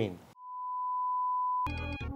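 A television test tone: one steady pure beep that comes in about a third of a second in, swells briefly, holds for over a second, then cuts off suddenly. It is the reference tone that goes with the colour-bar test screen.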